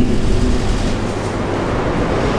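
A steady, loud rumbling noise with no clear pitch and no voices.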